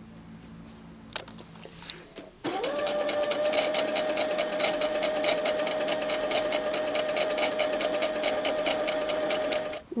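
Domestic electric sewing machine running steadily as it stitches a seam through two layers of fabric: a steady motor whine with a rapid, even clatter of the needle. It starts suddenly about two and a half seconds in, after a quiet stretch, and stops just before the end.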